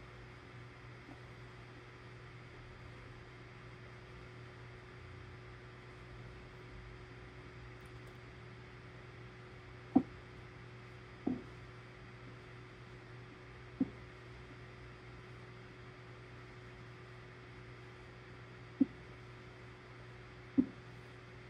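Quiet room tone with a steady low hum, broken by four short, soft knocks: one about halfway through, two more a few seconds later, and one near the end.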